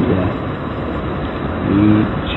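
A man's voice slowly saying single letters of the alphabet for a sobriety test, with long gaps between them, over a steady background noise.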